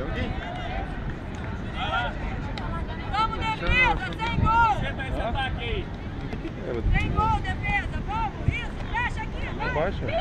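Players and spectators shouting and calling out: many short, high calls that rise and fall, bunched around the middle and again in the second half, over a low, uneven rumble of wind on the microphone.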